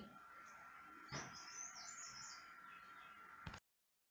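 Faint bird chirping in the background: a short run of quick, high chirps about a second in, over a faint steady tone. A small click comes near the end, then the sound cuts off to silence.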